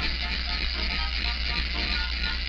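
Old cartoon soundtrack: a steady, dense noisy sound effect over the orchestral music score, with the music's notes faint beneath it.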